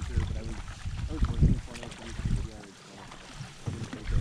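Canoe paddling on the river: water sloshing and paddle strokes, with gusts of wind rumbling on the microphone and people's voices talking indistinctly.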